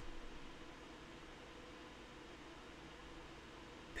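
Faint steady hiss with a low hum: room tone with no distinct sounds.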